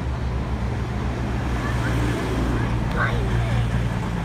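Steady low rumble of a rake of passenger coaches rolling away along the track, steel wheels on rail, pulled by a distant steam locomotive.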